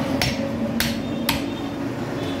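Heavy curved butcher's chopper striking beef on a wooden chopping block: three sharp chops about half a second apart.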